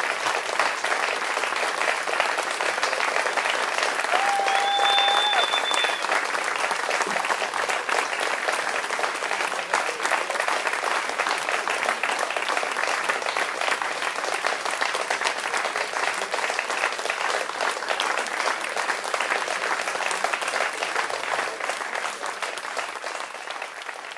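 Concert audience applauding steadily, the clapping fading out near the end. A short steady tone sounds briefly about four seconds in.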